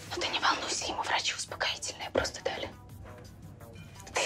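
Whispered speech over quiet background music; the whispering stops a little before three seconds in, leaving the music.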